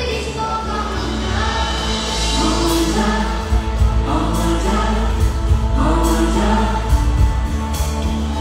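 Live concert music through a PA: singing over band backing, with a heavy steady bass and regular drum hits.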